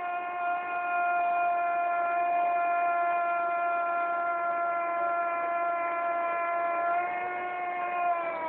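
TV commentator's long held goal cry: one high note sung out at a steady pitch the whole time.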